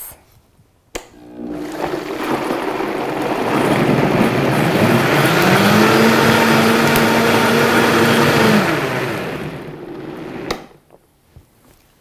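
Vitamix blender blending a thin liquid sauce. It switches on with a click about a second in, and the motor rises in pitch as the speed dial is turned up, then runs steadily at high speed. Near the end it winds down and clicks off.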